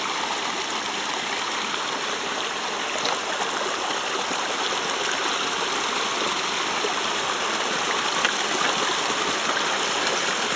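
A river rushing steadily, with a few faint knocks about three and eight seconds in.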